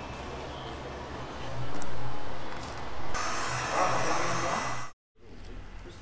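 Handheld electric heat gun blowing hot air onto vinyl wrap film, coming on again about three seconds in after a louder rushing swell, then cut off abruptly near the end.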